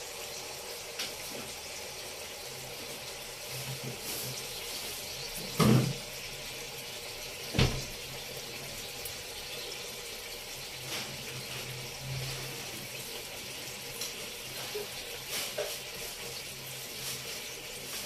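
A steady watery hiss, broken by two short knocks about six and eight seconds in.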